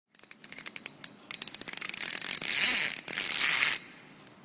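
Intro sound effect: a run of sharp clicks that speeds up over about two seconds into a loud, continuous high rattling buzz, briefly broken once, then cutting off suddenly just before the end.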